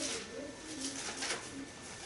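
Thin Bible pages rustling as they are leafed through, in a few short brushes. A faint low wavering tone runs underneath.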